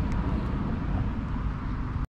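Steady low outdoor rumble with no clear single source, and a faint click shortly after the start.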